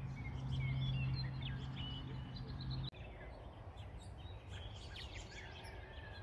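Small birds chirping and calling in short scattered whistles, over a steady low hum that cuts off suddenly about halfway through.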